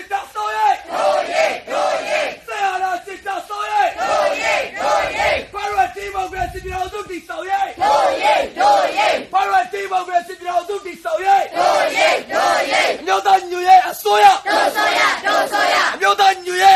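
Crowd of protesters chanting slogans in unison: short shouted phrases repeated in a steady rhythm, with fists raised.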